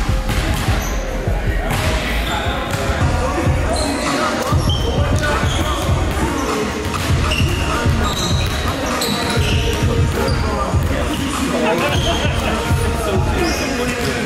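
A basketball dribbled on a hardwood gym floor, its bounces echoing in a large hall, with voices in the background.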